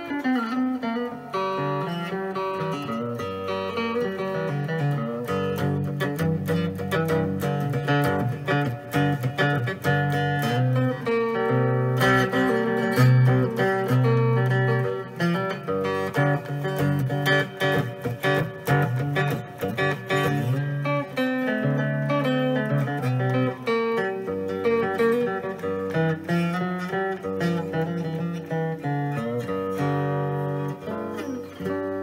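Three-string electric cigar box guitar played with a clean, undistorted tone: a continuous run of picked notes and chords.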